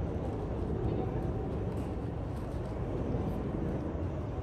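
Street ambience of a market walkway: a steady low rumble with indistinct voices in the background.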